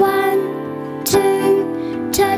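Gentle children's song music with held melody notes and a sharp accent about a second in.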